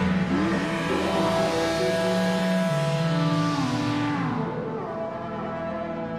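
Instrumental electronic music: analog synthesizer tones that slide slowly up and down in pitch over a low bass line. A hissing high wash fades out about four and a half seconds in.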